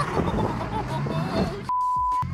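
BMW M4's twin-turbo straight-six revving and falling, heard from inside the cabin as the car is slid sideways. Near the end a single-tone censor bleep cuts out everything else.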